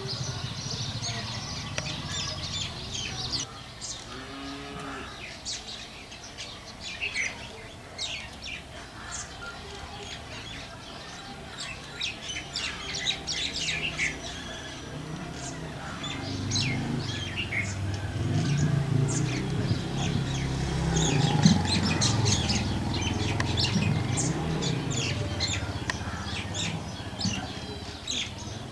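Small birds chirping repeatedly in quick, short calls. A low hum swells up about halfway through and fades near the end.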